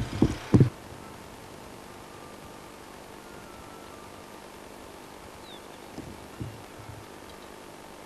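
Quiet open-air background with a steady hiss, a couple of low thumps right at the start and a few soft thumps about six seconds in.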